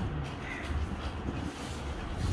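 A crow cawing once, about half a second in, over a low steady background rumble.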